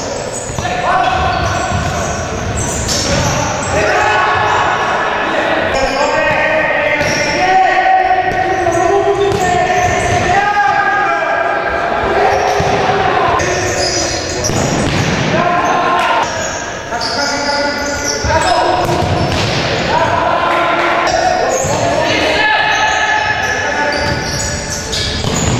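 A futsal ball being kicked and bouncing on a wooden sports-hall floor, a run of sharp thuds that echo in the hall, under steady shouting voices.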